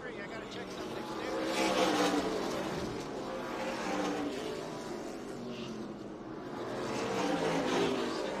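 Several NASCAR K&N Pro Series stock cars' V8 engines at racing speed, running as a close pack, their pitch rising and falling as they go through the corner and by. The sound swells about two seconds in and again near the end.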